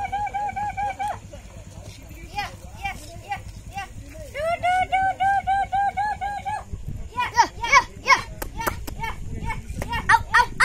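A woman calling chickens with one short syllable repeated quickly at a steady pitch, about five or six times a second, in two runs. Near the end come a few sharper, higher calls.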